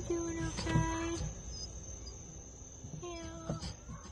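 A crated dog whining in short, steady-pitched cries: a brief one at the start, a longer one around a second in, and another near the end. A few sharp knocks come with them.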